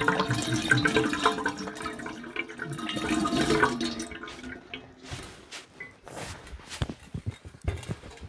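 Water poured from a metal jug over a person's hands into a metal basin, splashing, with clinks of metal. Voices are heard over it in the first half, and the splashes and clinks continue more quietly after that.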